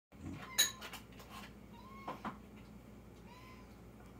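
Domestic cat giving a few faint short mews. A sharp click about half a second in and a pair of knocks a little after two seconds are louder than the mews.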